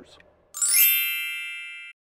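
A bright chime sound effect: a quick rising shimmer about half a second in, then a bell-like ringing that fades and cuts off abruptly just before the end.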